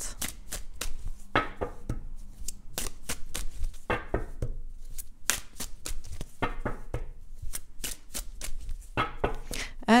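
A deck of oracle cards being shuffled by hand: a long run of quick, sharp card clicks and slaps.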